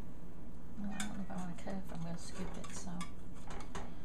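Kitchen utensils clinking and scraping against a glass casserole dish as a slotted spatula is worked into the baked casserole, with a sharp knock about a second in and scattered ticks after.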